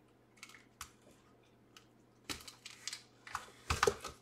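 Typing on a computer keyboard: a few scattered key clicks, then a quicker run of louder clicks from about halfway on.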